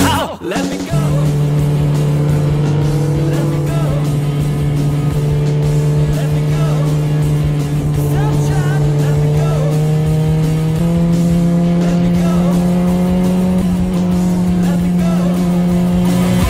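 Motorcycle engine running at steady revs while riding. Its pitch creeps slowly up, then steps higher about eleven seconds in and holds. Music plays faintly underneath.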